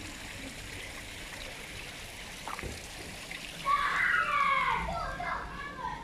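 Steady hiss of running water, and about two-thirds of the way in a high-pitched voice calls out for about two seconds.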